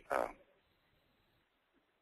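A man's short, drawn-out hesitation "uh", followed by faint steady hiss of room tone.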